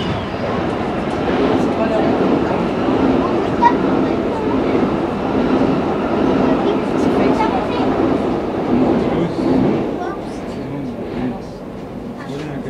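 A train passing close by on the adjacent track, heard from inside a stopped RER commuter train: a steady rush of wheel and motor noise that comes up suddenly at the start and fades about ten seconds in.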